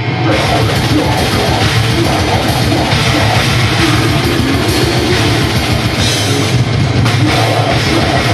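Heavy metal band playing live and loud: distorted electric guitar riffing over drums with a fast, steady run of kick-drum beats.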